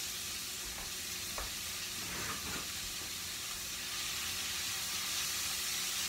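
Sliced onions sizzling in hot oil in a skillet, a steady hiss as their water cooks off, with a few light knocks as they are stirred.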